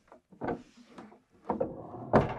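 Wooden barn-style sliding door rolling open along its overhead metal track: a short bump about half a second in, then a rolling noise that builds toward the end.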